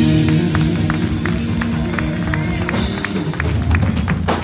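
Live gospel band music: an electric guitar playing over held chords, with a steady ticking beat of about three to four strokes a second.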